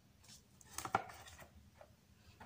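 Album packaging being handled: a few light clicks and rustles, with the sharpest tap about a second in.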